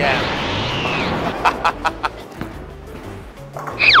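Edited-in sound effects: a loud electric zap-like whoosh with a falling tone in the first second, a few sharp clicks about a second and a half in, and a fast-falling whistle-like glide near the end.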